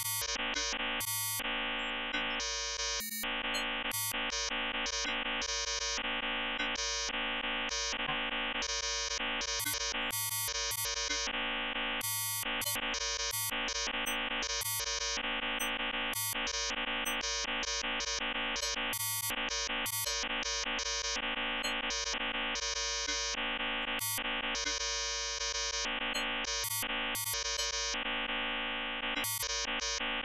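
Synthesized electronic tones from a Max 8 patch: dense stacked buzzing tones at a steady level, with the upper tones cutting in and out abruptly several times a second in an irregular, glitchy pattern.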